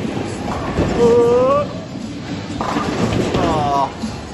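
Bowling ball rolling down a lane with a steady low rumble, just after release.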